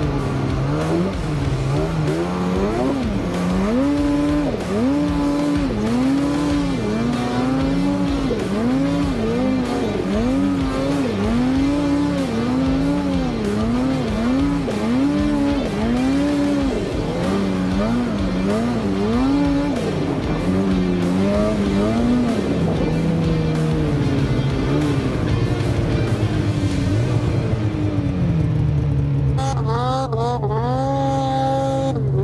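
Snowmobile engine revving up and down over and over, roughly once a second, as the throttle is worked through deep powder snow. Near the end it settles to a steadier, lower note.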